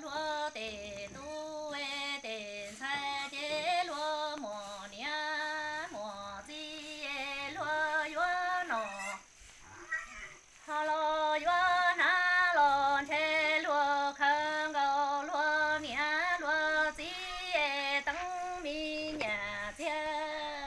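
A woman singing kwv txhiaj, a Hmong sung poem, here an orphan's lament, solo and unaccompanied in long, wavering held phrases, with a short break near the middle.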